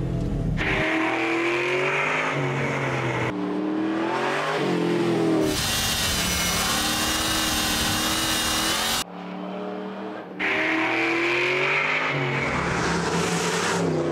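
Ford Mustang SVT Cobra's V8 under hard acceleration on a track lap, its note rising and falling with revs and gear changes. The sound cuts abruptly between in-car and trackside recordings, with a stretch of loud rushing noise in the middle.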